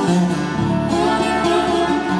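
Acoustic guitar strummed and picked, with concertina holding sustained notes underneath, in an instrumental passage of a traditional Irish ballad.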